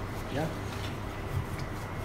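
A wooden rolling pin rolls chapati dough out on a wooden board: a low, steady rolling and rubbing under a short spoken word.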